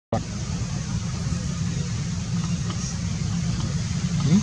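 Steady low background rumble with an even hiss over it, like outdoor wind or distant traffic noise on the microphone.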